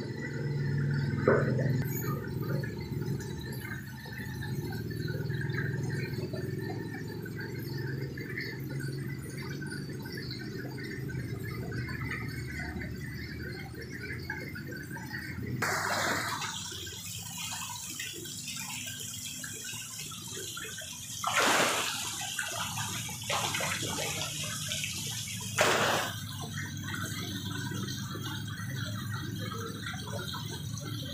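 Water pouring from pipes into a fish holding tank with a steady splashing. From about halfway on there are several sudden louder splashes, two of them sharp, as the crowded fish thrash at the surface.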